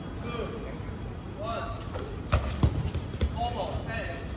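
Dodgeballs hitting the hard court or players: two sharp thuds close together a little past halfway, then a weaker one, among short shouted calls from players.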